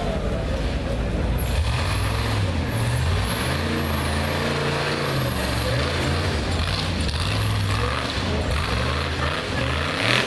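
A rock bouncer buggy's engine being revved hard and repeatedly, its pitch rising and falling again and again as the buggy claws up a steep rock hill.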